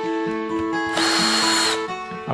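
Cordless drill running in one short burst of under a second, with a high motor whine, about halfway through.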